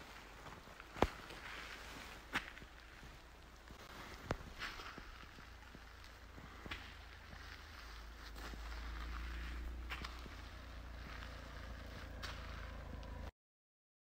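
Slow, irregular footsteps on snowy, stony ground, a few sharp steps a second or two apart, over a faint low rumble that grows louder about eight seconds in. The sound cuts off suddenly just before the end.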